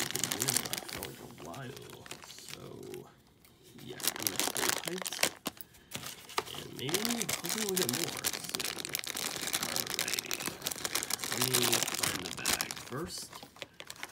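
Shiny plastic blind bag crinkling as it is squeezed and felt between the fingers: a dense run of crackles, with a short lull about three seconds in.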